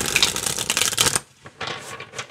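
A tarot deck being riffle-shuffled by hand: a dense run of fast card-edge clicks lasting about a second as the two halves interleave, then a shorter, softer run near the end.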